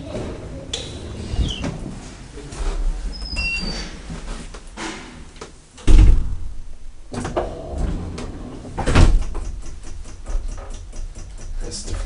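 KONE elevator doors sliding and clattering, with two heavy thuds, the louder about six seconds in and another about three seconds later. Near the end a rapid, even ticking of about five strokes a second sets in.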